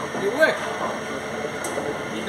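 An electric motor turning a gearbox on a bench test, running with a steady hum with no breaks or changes.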